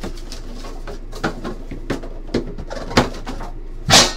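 Hands handling cardboard card boxes and loose plastic wrapping: scattered rustles and light taps, then a sharper knock near the end as a box is set down.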